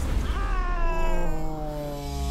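A cartoon panda's long wailing cry. It rises quickly about a third of a second in, then slides slowly and steadily down in pitch.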